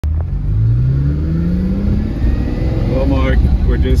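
The mid-mounted 5.2-litre V12 of a 1989 Lamborghini Countach 25th Anniversary accelerating, heard from inside the cabin. Its note rises steadily in pitch for about two seconds over a steady low rumble.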